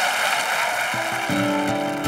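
A brief wash of noise, then an acoustic guitar starts playing about a second in, picking out the opening of a song.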